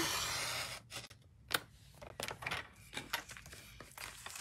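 Paper trimmer blade sliding down its track through card stock, a short scraping hiss that fades within the first second. Then a sharp click and light taps and rustles as the cut paper is handled on the trimmer.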